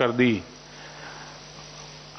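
A man's speech ends about half a second in, followed by a pause filled only with a faint steady low hum and hiss of background noise.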